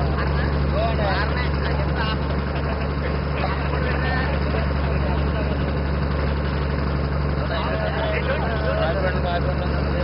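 A passenger boat's engine heard from on board, running with a steady low drone. Voices call out over it now and then.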